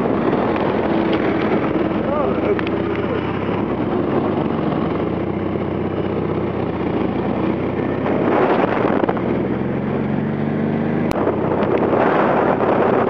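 Polski Fiat 126p cars driving in a convoy, their small air-cooled two-cylinder engines running steadily, the engine note climbing slightly in pitch about two-thirds through, with a sharp click near the end.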